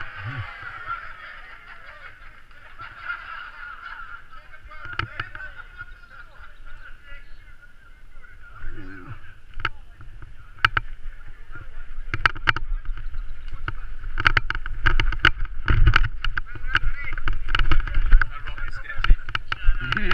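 Mountain bike rattling and knocking as it rides down a rough dirt trail, with a low rumble on the helmet camera's microphone. The sharp knocks and clatter start about halfway through and come thick and loud in the second half.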